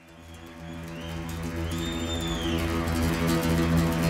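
Acoustic guitar music fading in and growing louder over a low steady drone, with a brief high gliding tone that rises and falls about two seconds in.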